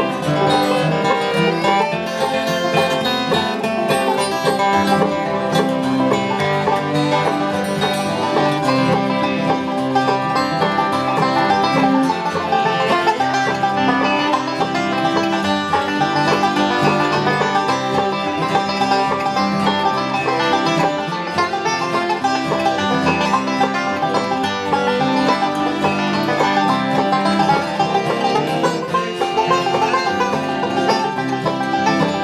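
Bluegrass string band playing an instrumental, with a finger-picked five-string resonator banjo taking the lead over acoustic guitar rhythm and a fiddle in the background.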